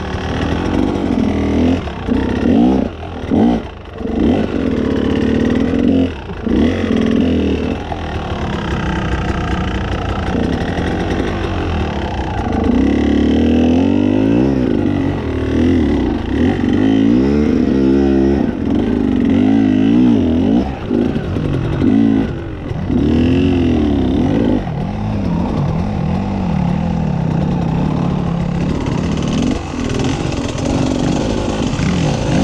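Enduro motorcycle engine under hard throttle on a rocky hill climb. In the first several seconds it comes in short, choppy bursts as the throttle is blipped on and off. It then runs steadily loaded, its pitch rising and falling as the rider works the throttle up the slope.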